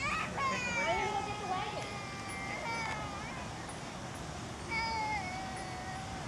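A child's voice calling out in long, drawn-out, high-pitched shouts: one held for about two and a half seconds at the start, slowly falling in pitch, and another starting near the end.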